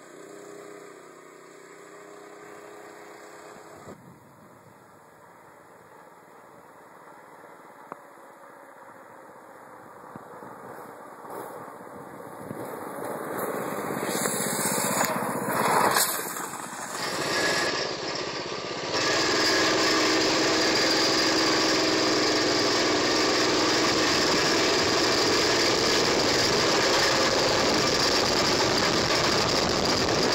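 Single-cylinder 6.5 hp Predator 212cc OHV engine of a homemade mini chopper. At first it is faint in the distance, then it grows louder as the bike comes back closer. From about two-thirds through it runs steady and loud at road speed, heard from on the bike itself.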